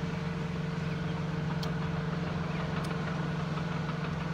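Steady low machine hum, unchanging throughout, with a faint steady tone above it, like an engine or motor running; two faint ticks in the middle.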